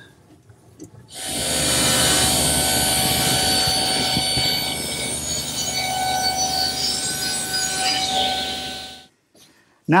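Table saw running with its blade tilted, crosscutting an angled end on a wooden board fed with a miter gauge. The saw noise starts about a second in, holds steady with a constant motor whine through the cut, and cuts off abruptly near the end.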